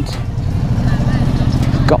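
Motorcycle engine running under way, heard from the rider's seat, a steady low rapid pulsing with wind noise over it.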